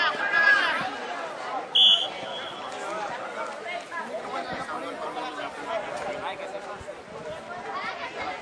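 Several people talking and calling out at once around a football pitch, an unintelligible babble of voices. About two seconds in comes one short, loud, high-pitched tone, the loudest moment.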